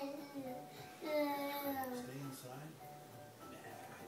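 Baby cooing: long, drawn-out, high-pitched vowel sounds, one trailing off just after the start and another, slightly falling, about a second in, followed by softer babble.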